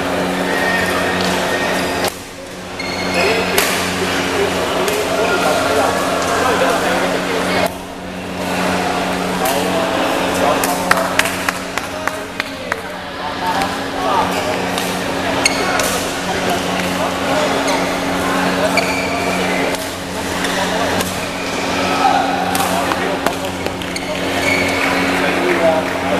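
Badminton rackets striking a shuttlecock in sharp, scattered hits during rallies, over constant voices of players and spectators echoing in a large sports hall, with a steady electrical hum underneath.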